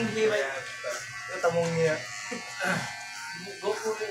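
Electric hair clippers buzzing steadily as they are run over a man's short hair during a haircut.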